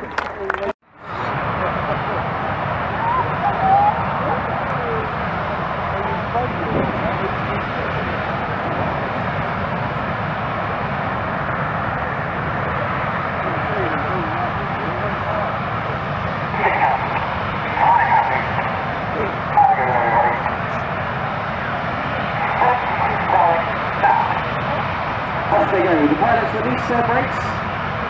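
Steady noise of BAE Hawk jet trainers' engines running on the runway, with nearby spectators talking from about halfway through. A brief dropout about a second in.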